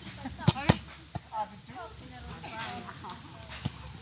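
Sharp smacks of a small ball being kicked and struck. Two come close together about half a second in and single, fainter ones follow later, with players' voices calling out in between.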